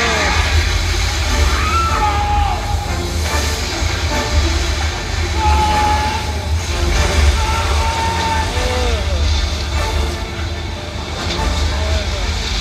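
Film soundtrack played loud through cinema speakers and heard in the auditorium: music over a heavy, steady low rumble and rushing water. A few short voices call out over it.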